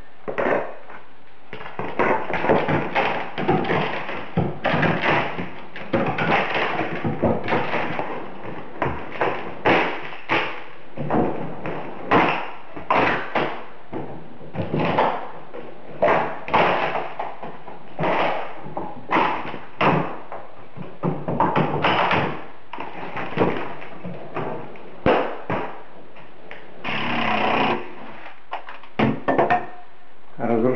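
Renovation demolition with hand tools: a steady run of irregular knocks, bangs and cracks as trim and fittings are pried and broken off the walls, with a longer rasping noise near the end.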